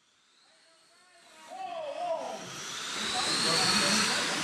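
After about a second of near silence, race sound fades in and grows louder: the high whine of 1/10-scale RC cars' 21.5-turn brushless electric motors, wavering up and down in pitch as they accelerate and lift, over a steady hiss of cars on the dirt track.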